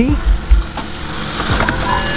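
Two low thumps about half a second apart from handling inside a car as the key fob is pushed into the dashboard ignition slot. A steady background noise follows.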